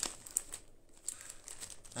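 Light crinkling rustle of something small being handled close to the microphone, with two sharp clicks, the second about a third of a second in.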